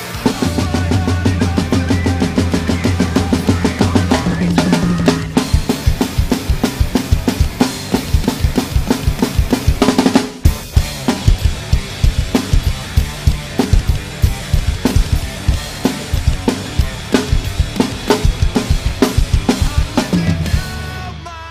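Drum kit played hard along to the song's recording: bass drum, snare and cymbals. A held low bass note runs under the first few seconds, then the drums drive on in fast, even strokes, with a brief break and crash about halfway through.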